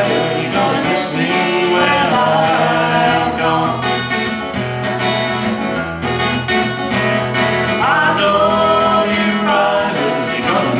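Steel-string acoustic guitar played live, with a woman singing over it; one of her notes rises about eight seconds in.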